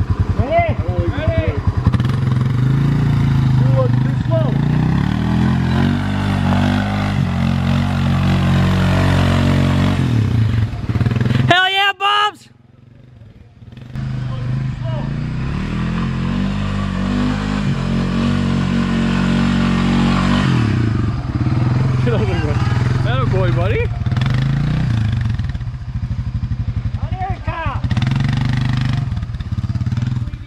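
ATV engine running under load, its pitch stepping up and down with the throttle. The sound cuts out abruptly for about two seconds near the middle, then the engine runs on.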